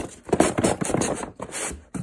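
Cardboard boxes being handled: a sharp knock at the start, then cardboard rubbing and scraping as an inner box is slid out of its outer shipping box.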